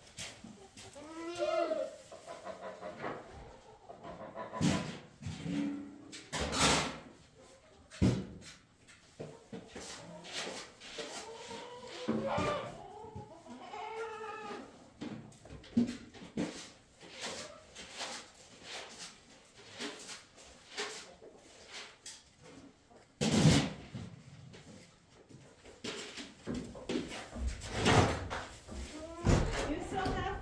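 Barn animals calling, long wavering calls near the start and again from about twelve to fifteen seconds in, among scattered knocks and thuds. Several sharp bangs come through, the loudest about two-thirds of the way through and again near the end.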